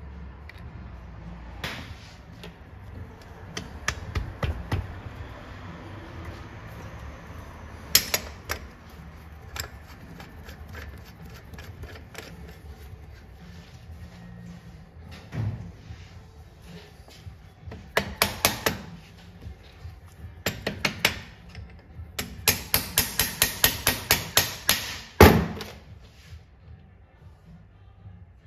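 Sharp metallic clicks and taps of a hand tool working on the bevel-gear drive in the aluminium crankcase of a Ducati 750 Super Sport engine. The taps come in scattered small groups, then a fast run of them near the end, with one louder knock just before it ends.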